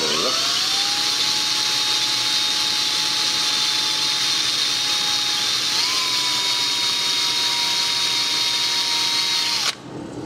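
DeWalt cordless drill running steadily, spinning a homemade polishing adapter inside the corroded bore of an aluminium ATV brake master cylinder. It spins up at the start, speeds up slightly about six seconds in and stops just before the end.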